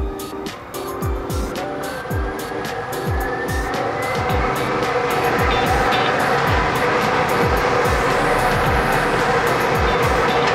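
Air-mix lottery draw machine starting up: its blower rises in pitch over the first few seconds and grows louder as the balls begin tumbling and rattling around inside the clear plastic globe. Background music with a steady beat plays throughout.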